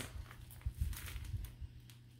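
Faint handling noise of a plastic package being picked up: light rustling and clicks, with a few soft thumps about a second in.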